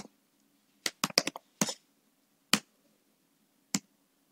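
Computer keyboard keys clicking as a line of code is typed: about ten short, sharp key presses at an irregular pace, with a quick run of several around a second in.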